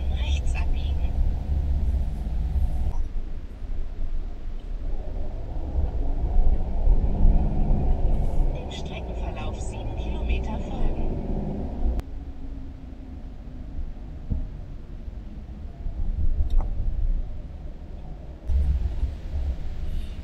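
Motorhome driving on the road, heard from inside the cab as a steady low rumble of engine and tyres. The level changes abruptly about three seconds in, again about twelve seconds in, and rises again near the end.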